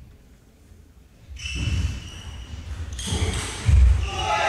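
Table tennis point being played: from about a second and a half in, the ball clicks off bats and table amid low thuds, growing busier, with the loudest thud just before the end.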